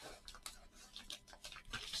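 Faint rustling and crinkling of a padded manila mailer as a cardboard-wrapped graded card is slid out of it, in a run of short scratchy sounds.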